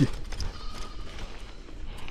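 Bicycle rattling over a rough, stony dirt road: an irregular run of knocks and clatter from the bike and its tyres on the loose stones, over a low rumble.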